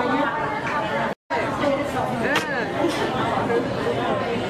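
Indistinct chatter of several voices talking at once, broken by a short total dropout to silence a little over a second in.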